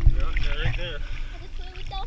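Sea water sloshing and splashing over a waterproof camera held at the surface, loudest just after the start. Over it come a few short pitched calls that bend up and down in the first second.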